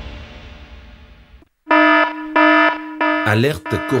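A news theme tune fades out, and after a brief gap two long electronic alert beeps sound, about half a second each, a buzzing tone. They open a coronavirus alert announcement, and a voice begins near the end.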